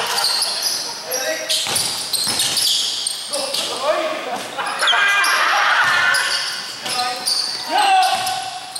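Basketball dribbled and bounced on a hardwood court, with repeated sharp knocks and the short high squeaks of sneakers on the floor as players run, echoing in a large gym.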